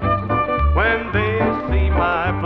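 1950s Nashville country band playing between sung lines, with a bass note on a steady beat about twice a second under guitar, fiddle and piano.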